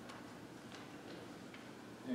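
A few faint, unevenly spaced ticks or clicks over quiet room tone.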